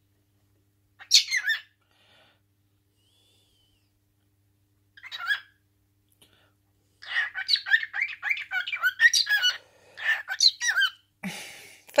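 Cockatiel chirping and squawking: a short call about a second in, another around five seconds, then a long run of quick, warbling chirps from about seven seconds until near the end.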